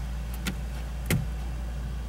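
Two short knocks, a faint one and then a louder one just after a second in, over a steady low hum.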